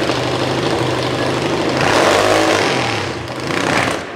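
V-twin drag bike engine running at the start line, idling with a steady, lumpy pulse and rising in a brief rev about halfway through.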